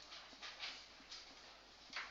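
Marker pen writing on a whiteboard: a handful of short, faint strokes of the felt tip across the board.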